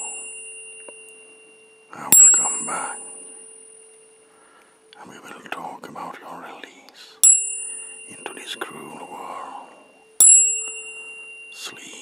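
Metal tuning forks struck three times, about two, seven and ten seconds in. Each strike is a sharp ping with high ringing overtones that fade over a few seconds, over a low steady tone that rings throughout.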